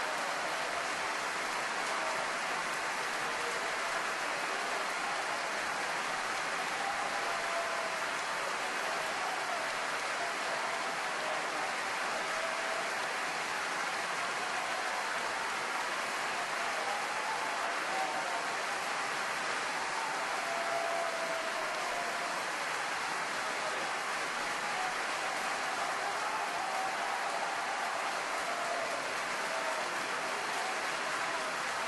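Large opera-house audience applauding in a long, steady ovation, with scattered cheering voices, after a tenor aria: an ovation calling for an encore.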